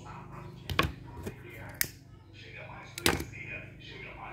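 The loudspeaker announcement of a Brazilian street egg truck, a faint recorded voice over a steady low hum. Three sharp clicks cut through it, the loudest about three seconds in.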